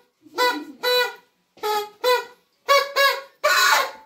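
A small reed horn or toy horn blown in short toots, about seven in quick succession, all on much the same note, ending in a longer, breathier blast.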